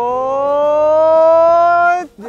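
A man's long drawn-out cheering shout: one held vowel that rises slowly in pitch and cuts off suddenly near the end, urging a jumper on through his run-up to the leap.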